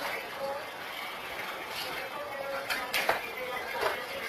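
Faint, indistinct voices over steady background hiss, with a few sharp clacks or knocks about three seconds in, the strongest a pair close together.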